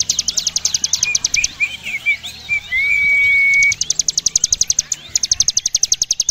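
Ciblek gunung (a prinia) singing its rapid, buzzing trill, which breaks about a second in for a few short chirps and a held whistle note, then starts again twice.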